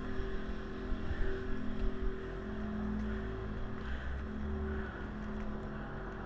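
Steady low rumble of a motor vehicle's engine running nearby, with a few faint held tones over it.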